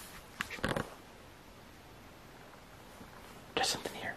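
Two brief whispered voice sounds, one about half a second in and one near the end, with faint hiss between them.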